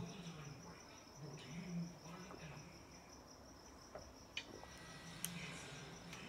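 A cricket chirping steadily, a faint continuous high pulsing trill. Faint low 'mm' hums come and go under it, with a couple of small clicks in the second half as beer is sipped.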